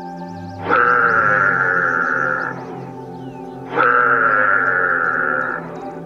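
An animal call heard twice, each one starting suddenly and held for about two seconds, the two nearly identical, over steady background music.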